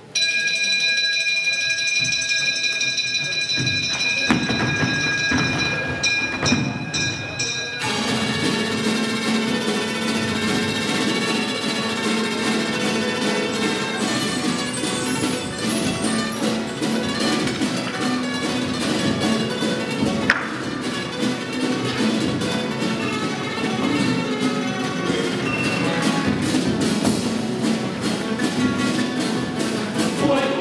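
A carnival comparsa's music opening its performance. A few steady high held tones sound for the first several seconds; then, about eight seconds in, the full ensemble comes in with a steady percussive rhythm.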